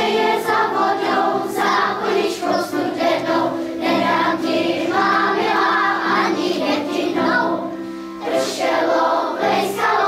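Children's choir singing together, with a short break between phrases about eight seconds in.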